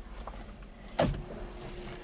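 A single sharp knock about a second in, over a faint steady hum.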